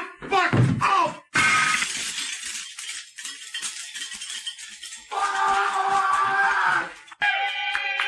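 A man's shouted cursing cuts off about a second in with a sudden loud crash of something breaking, which clatters and fades over the next few seconds. Music comes in at about five seconds and gives way to a new tune near seven seconds.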